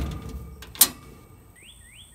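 Sheet-metal side access hatch of a Lincoln Ranger 225 engine-drive welder shutting: the ringing tail of a bang at the start, then a single sharp click, the latch catching, a little under a second in. Three short rising chirps near the end.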